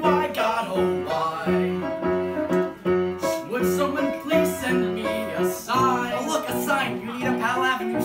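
Piano playing steady chords as accompaniment while male voices sing a comic song.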